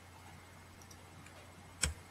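Quiet room with a faint steady low hum, a couple of faint ticks, then one sharp, loud click near the end.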